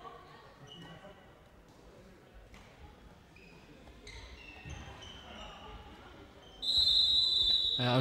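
Players' shoes squeaking and a handball bouncing on a sports hall floor, then, about six and a half seconds in, a referee's whistle blows one long, loud blast, calling a travelling (steps) violation.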